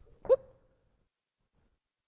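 A man's short, high 'whoop' called out as he lands a skipping hop, with soft low thuds of feet on a tumbling mat around it.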